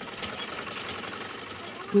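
Sewing machine running at a steady speed, its needle mechanism giving a fast, even run of clicks.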